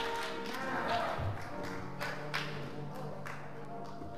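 Soft church music with held chords, with a few scattered claps and taps as applause dies away.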